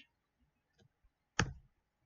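A single sharp click about one and a half seconds in, with a couple of faint ticks before it, as the presentation is advanced to the next slide.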